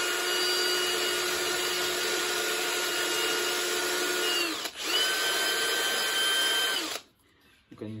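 Hand-held electric power tool with a cutter bit, running at high speed with a steady whine while it grinds out the bores of a hard plastic carburetor spacer so they do not overlap the carburetor's outlets. It cuts for about five seconds, pauses briefly, runs again for about two seconds, then stops.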